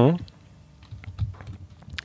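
The end of a murmured 'hm', then a few soft scattered clicks in the quiet before speech resumes.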